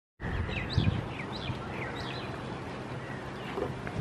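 Outdoor rural ambience: a steady background hiss with a bird calling about three times in the first two seconds, each call a short downward-sliding chirp.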